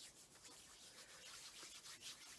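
Palms rubbing together, slick with cleansing oil: a faint, steady swishing rub.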